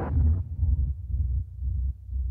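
Tail of a logo-animation outro sting: a whoosh dies away in the first half second, leaving deep bass pulses that swell and dip several times.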